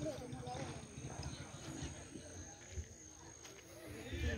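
Faint, indistinct voices over a low rumbling noise.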